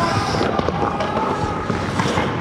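Echoing clatter of ice hockey play in an indoor rink: rapid sharp clacks of sticks and puck on the ice, with skate blades scraping and a hiss of skates near the start.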